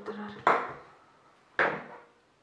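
Two sharp clinks of hard makeup containers knocking together as products are handled, one about half a second in and one near the end.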